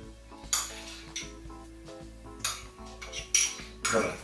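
A spoon clinking and scraping against a small bowl in a series of sharp clinks as dressing is spooned out over a salad, with soft background music underneath.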